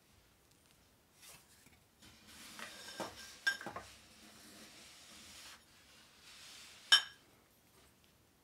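Rustling of a sleeve and paper as small cards are moved about on a felt mat, with a few light clicks in the middle. Near the end a single sharp clink rings out, the loudest sound.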